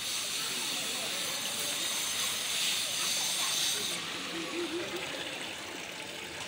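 Water pouring from a carved stone spout, splashing over a hand and into a stone channel: a steady hiss of falling water that grows softer about four seconds in.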